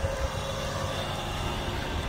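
A car's engine idling with a steady low hum.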